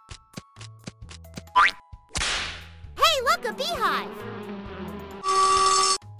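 Cartoon soundtrack: light music with plucked low notes and ticking clicks, overlaid with cartoon sound effects, including a quick rising glide, a whoosh, and springy boing-like sweeps that rise and fall, and ending in a loud steady bright sound.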